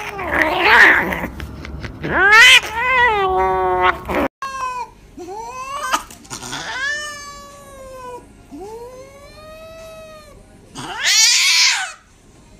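Frightened cats yowling and snarling while held down for an injection. There are harsh, hissing snarls at the start and near the end, and between them a run of drawn-out yowls that rise and then fall in pitch. These are the distress calls of a cat resisting handling.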